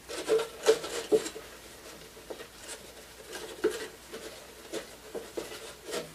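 Paper towel wiping the inside of a thin clear plastic soda bottle, the plastic crinkling and crackling in irregular short bursts, a quick cluster about a second in and scattered ones after.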